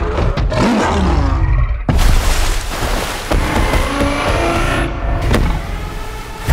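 Action-trailer sound effects for giant transforming robots: a vehicle engine and mechanical whooshes with rising glides early on, broken by a heavy impact about two seconds in.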